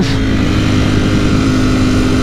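Ducati Panigale V4's V4 engine running at a steady part-throttle cruise at about 100 km/h, with wind noise over the microphone. It holds a steady pitch with no revving.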